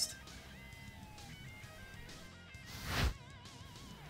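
Quiet background music with plucked guitar-like notes, and a brief whoosh that swells and cuts off about three seconds in.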